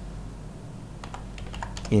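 Computer keyboard being typed on: a handful of irregular key clicks as a word is typed out.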